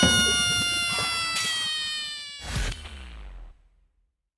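Comedic sound effect: a long brass-like note sliding slowly down in pitch. A low thump comes about two and a half seconds in, and the sound fades out about a second later.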